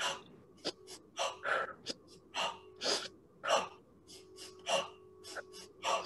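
A person doing the shamanic breathing technique: quick, sharp breaths in through the nose and forceful breaths out through the mouth, in a rapid series of about two breaths a second.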